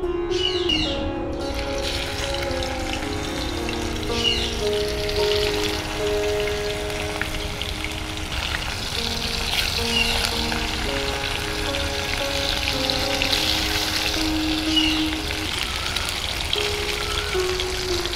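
Hilsa steaks sizzling as they fry lightly in hot oil in a nonstick kadai, a steady crackling hiss, with soft instrumental background music of held notes over it.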